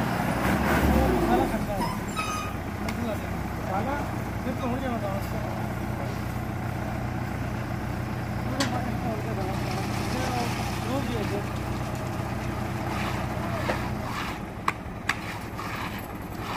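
Tractor engine running steadily while it drives a tractor-mounted concrete mixer, with voices in the background. The steady hum drops a couple of seconds before the end, and two sharp knocks follow.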